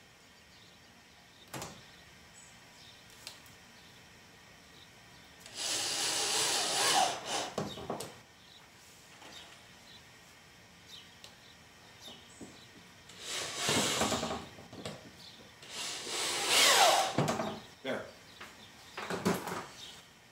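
Corded electric drill driving one-and-a-quarter-inch deck screws through five-eighths plywood, in about four separate bursts of a second or two each, the motor's pitch climbing as it spins up.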